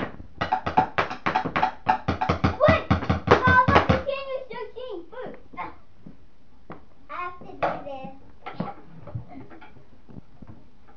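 A child's voice over a fast run of sharp taps, about five a second, for the first four seconds, then the child's voice with scattered knocks.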